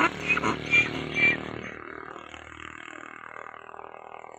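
Male donkey braying: a run of rapid, evenly repeating hee-haw pulses that stops about a second and a half in, then trails off in a long fading tail.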